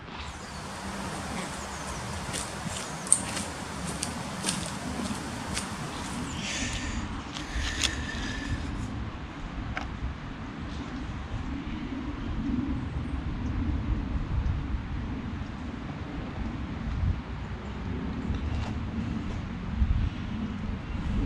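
Steady outdoor background rumble, with scattered sharp clicks in the first six seconds and a brief high chirping sound about seven seconds in.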